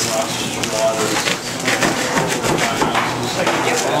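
Several people talking indistinctly over short scratching strokes of a hand tool cutting through foam insulation board.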